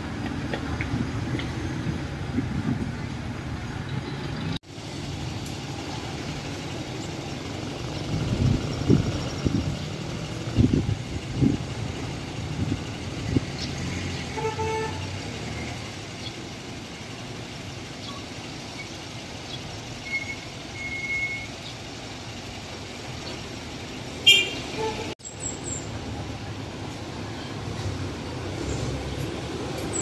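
Outdoor street ambience: a steady low rumble of passing traffic with a few short vehicle-horn toots, one held about a second and a half past the middle. The sound drops out briefly twice.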